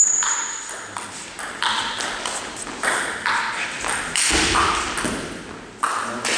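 Table tennis rally: a celluloid ball struck back and forth with rubber-faced bats and bouncing on a Stiga table, about half a dozen sharp clicks, each with a short echo.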